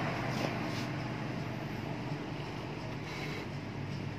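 A steady low background engine hum, with no speech over it.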